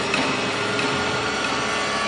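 A steady hissing drone with a faint held note and no beat, the kind of sustained sound bed a TV drama's background score lays under a pause.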